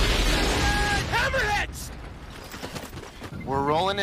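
Fighter craft roaring low overhead: a loud rushing noise with a deep rumble for about a second and a half, then a quieter rumble. A voice starts near the end.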